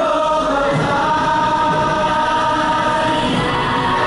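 Choral music: a choir holding long, sustained notes.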